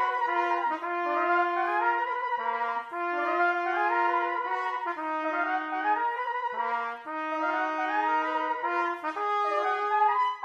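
Several overdubbed trumpet parts playing a march in harmony, with held low notes under moving upper lines. The phrases break briefly about three seconds in and again about seven seconds in.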